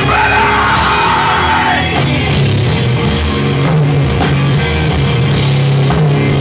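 Groove/doom metal band playing live: distorted guitars, bass and drums, with the vocalist yelling one long held note over the band for about the first two seconds.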